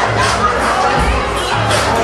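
Loud hip-hop club music with a heavy, repeating bass beat, under the noise of a packed, shouting crowd.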